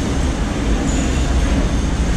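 Loud, steady low rumble with a constant hiss over it, with no distinct events.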